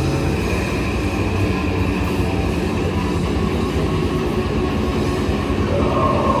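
Live heavy rock band playing loud: distorted electric guitar and bass held in a dense, steady wall of sound over drums.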